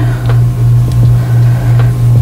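A loud, steady low hum, with a few faint light clicks.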